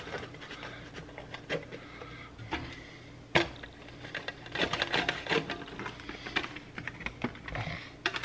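Plastic clicks and knocks from a guillotine-style plastic bagel slicer being worked on a soft bun: a sharp snap about three seconds in, then a run of light rattling clicks. The blade fails to cut the soft bun.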